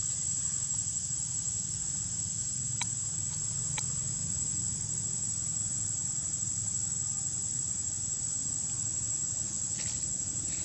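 Insects droning outdoors: one steady, unbroken high-pitched tone, with a low steady rumble underneath and two faint clicks about three and four seconds in.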